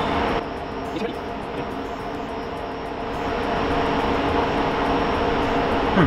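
Cooling fans of rack-mounted servers running: a steady whir with a few steady hum tones over a rushing noise, swelling slightly about three seconds in.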